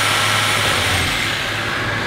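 Power saw cutting a window opening through the building's wall: a steady, noisy cutting sound with a thin high whine that holds and then drops slightly in pitch in the second half.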